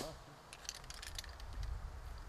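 Faint clicks and light metallic rattles of a shotgun being handled, over a low outdoor rumble.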